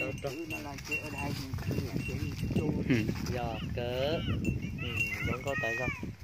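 Short pitched calls of farm animals mixed with voices, some rising and falling, over a low rumble of movement.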